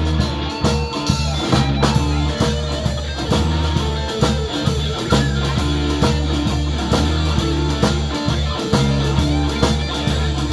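A live rock band playing an instrumental passage with no singing: electric guitar over a drum kit keeping a steady beat.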